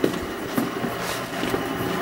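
Steady mechanical hum of running lab machinery, with a few scattered clicks and knocks.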